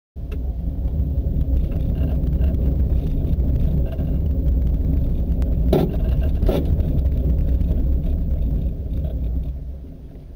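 Robinson R22 helicopter's piston engine and rotor heard from inside the cabin as it moves low along the taxiway, a loud steady low rumble. Two short knocks stand out a little past halfway through.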